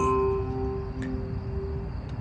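A steady held musical tone lasting nearly two seconds and stopping just before the end, with a few higher tones that die away in the first half second.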